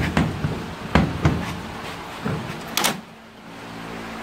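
1940 Ford's interior door handle and latch worked by hand as the door is opened, giving a series of metal clicks and knocks. The loudest is a sharp clack just under three seconds in.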